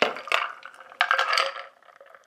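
A shaken cocktail poured from a metal shaker into a glass of ice: splashing and clinking in two spells, trailing off after about a second and a half.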